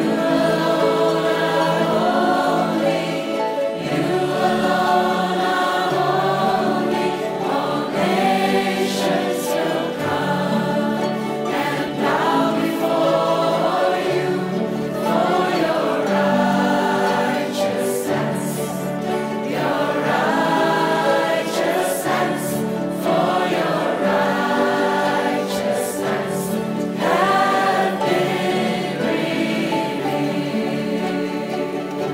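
A choir singing a worship song in slow, held phrases, accompanied by a large ensemble of harps.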